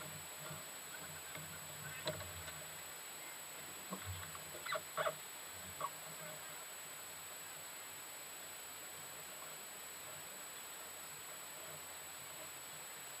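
Quiet ambience aboard a small sailing catamaran on a nearly windless lake: a steady faint hiss with a few brief sharp sounds, one about two seconds in and a small cluster between four and six seconds in.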